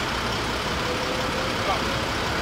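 Steady rumble of an idling vehicle engine mixed with city street noise, with a faint thin tone in the middle part.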